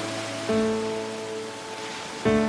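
Soft instrumental background music: held notes ring and fade, and a new low chord is struck about half a second in, over a soft steady hiss.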